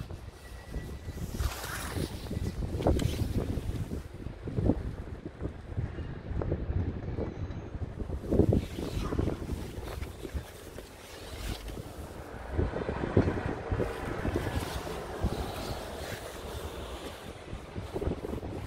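Wind buffeting the microphone outdoors: an uneven, gusty low rumble that swells and drops from moment to moment.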